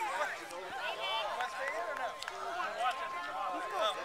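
Many overlapping voices of young children and adults chattering and calling out, with no single speaker standing out. A faint steady high tone comes in about a second in.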